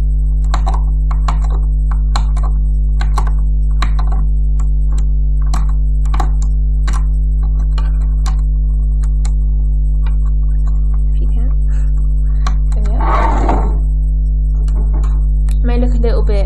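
A steady low electrical hum, with light irregular clicks of a crochet hook against the plastic pegs of a rubber-band loom as the bands are lifted off. There is a brief rustle about thirteen seconds in.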